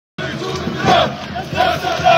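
Large crowd of marching protesters chanting and shouting together. Many voices swell loudly and fall back about every half second to second. The sound cuts in abruptly just after the start.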